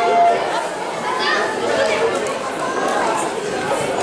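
Several people talking over one another close by, a spectators' chatter with no single clear voice. A short held note sounds right at the start.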